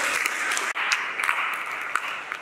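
An audience of schoolchildren applauding, a dense patter of many hands clapping.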